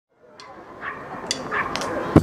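Outdoor background noise fading in from silence, with a few sharp clicks and two short, high calls.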